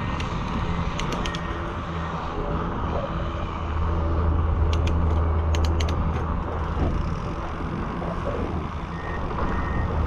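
Wind and road noise from a moving bicycle: steady wind rush on the action camera's microphone over a low tyre rumble that swells in the middle, with a few sharp clicks about a second in and again around five seconds.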